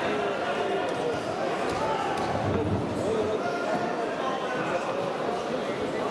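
Many voices talking at once, echoing in a large sports hall, with a few dull thuds.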